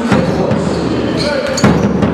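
A basketball bouncing on a hall court, sharp knocks with two close together near the end, over the din of voices in a sports hall.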